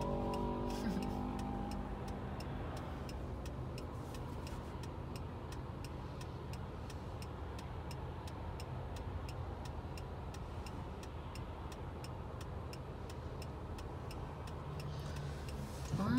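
Steady engine and road noise inside a car's cabin, with the turn-signal indicator ticking at an even pace.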